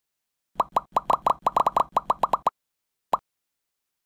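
A quick run of about a dozen short cartoon pop sound effects, each rising in pitch, packed into two seconds. A single pop follows a moment later. These are the popping effects of an animated title intro.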